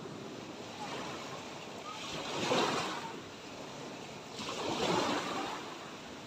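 Small waves breaking and washing up a sandy beach, with two louder surges of surf, about halfway through and near the end.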